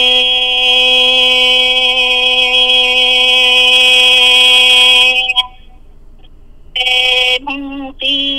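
A solo voice singing Hmong kwv txhiaj, holding one long steady note for about five seconds before it breaks off. After a short pause, a brief note and the start of the next sung phrase come near the end.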